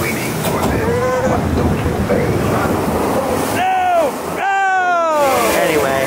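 Steady rush of water along the boat-ride flume, with a person's voice giving two high, falling whoops, the second long, around four seconds in.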